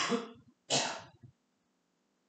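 A person clearing their throat twice, two short harsh bursts under a second apart.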